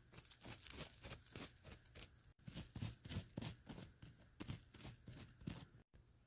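Faint, quick, irregular scratching and crunching of dry gravelly soil as a plastic toy wolf figurine is scraped through it to mimic digging.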